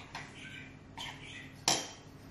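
Kitchen knife cutting through sourdough dough and clacking against the benchtop, with a few light knocks and one sharp clack near the end.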